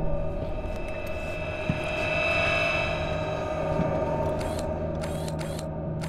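Sustained synthesized drone of a trailer soundtrack, swelling and easing off in the middle. Near the end, four or five quick shutter-like swishes come in as sound effects.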